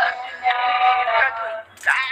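A voice singing long held notes in a narrow, phone-like sound: one note ends just after the start and a second is held for about a second. Talking begins near the end.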